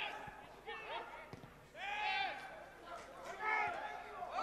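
Faint men's voices calling out on a football pitch: three short shouts spread across the moment, over quiet open-air background.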